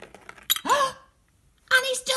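A single sharp clink about half a second in as the small egg comes off the toy chute against the little bucket with its wire handle. It is followed straight away by a short rising gasp-like exclamation, then near the end a longer falling 'oh'.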